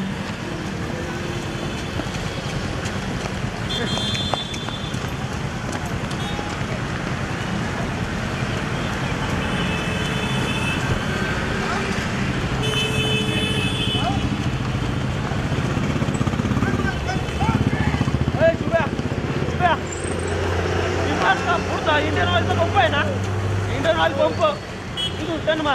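Road traffic: engines running steadily with a few short horn blasts, and people's voices calling out over it in the last few seconds.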